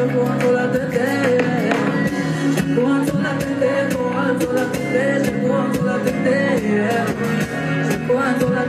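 Live concert music through a PA: a woman singing into a microphone over a band or backing track with a steady beat.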